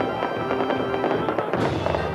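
Celebratory music playing with fireworks going off over it: a steady run of pops and bangs, and a hissing burst near the end.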